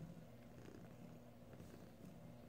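A mother cat purring faintly and steadily while her kittens nurse.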